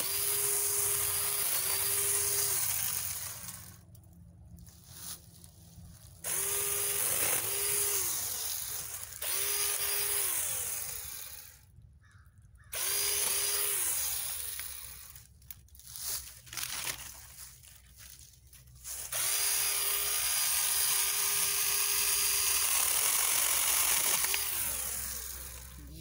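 Mini chainsaw cutting small limbs, run in four bursts of a few seconds each with pauses between. Its whine dips briefly again and again during each burst. The chain is running loose, not tightened before use.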